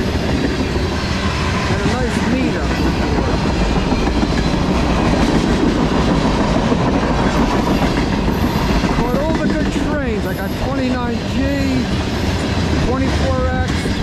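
Freight train tank cars rolling past close by: a steady, loud rumble of steel wheels on the rails.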